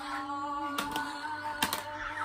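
Toy light-up lightsabers clashing: the plastic blades knock together twice, about a second and a second and a half in, over steady electronic tones.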